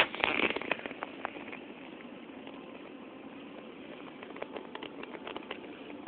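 Rustling and clicks of a phone being handled and swung round in the first second, then steady low indoor background hum with faint scattered ticks.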